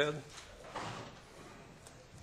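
Quiet meeting-room tone with a faint rustle about a second in and a small click near the end.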